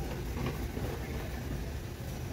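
Steady low rumble and hum of a large warehouse store's background noise, with no single distinct event standing out.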